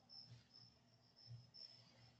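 Faint crickets chirping, a short high chirp two to three times a second, over near silence. Two faint soft scuffs come about a quarter of a second and about a second and a half in.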